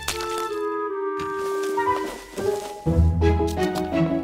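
Cartoon background score: a few held notes, then a fuller passage with bass and chords coming in about three seconds in, with a few light clicks near the end.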